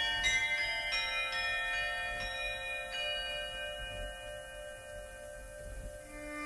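Tuned bells struck one after another, several notes in the first three seconds, each ringing on and slowly fading.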